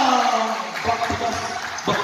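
Basketball game sound: a voice calling out and sliding down in pitch, then a few low thuds from the court under background voices.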